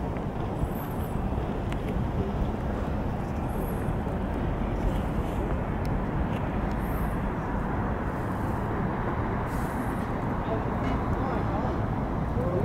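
Steady city ambience: a low, even hum of road traffic, with faint distant voices now and then.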